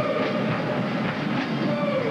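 Marching band brass holding a long note over drum beats, with a short downward slide in pitch near the end.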